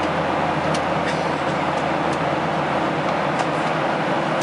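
Steady roar of a jet airliner's cabin in flight: engine and airflow noise, even and unbroken, with a few faint high ticks now and then.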